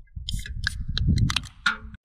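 Two aluminium soda cans being cracked open: a run of sharp clicks and snaps from the pull tabs over a low rumble.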